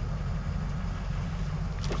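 Ford F-350's 6.0 L Power Stroke diesel V8 idling steadily, heard from inside the cab, with the air-conditioning fan hissing over it. A single click near the end.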